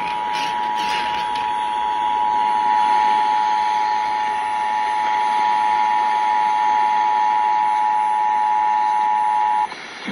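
Emergency alert radio sounding the EAS attention signal ahead of a flash flood warning: a steady two-note tone, over a background hiss, that grows louder over the first few seconds and cuts off sharply just before the end.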